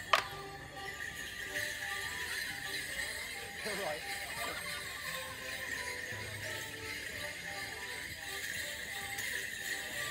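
Morris dance music, a steady stepped folk tune, over the constant jingle of the dancers' leg bells. Just after the start, one sharp clack of wooden dance sticks striking together.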